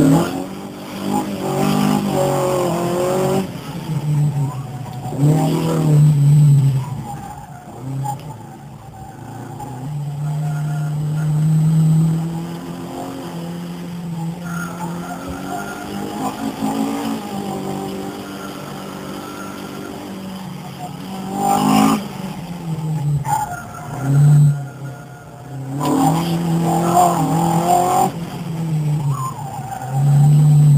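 Alfa Romeo Giulia Super's freshly rebuilt racing twin-cam four-cylinder engine, heard from inside the cabin, revving up and dropping back again and again, with short dips in level where the throttle is lifted or a gear is changed.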